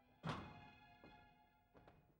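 A few thuds or knocks during a near-silent pause in an opera: one sharp knock about a quarter-second in with a short ringing decay, then fainter ones about a second in and near the end, over faint held music.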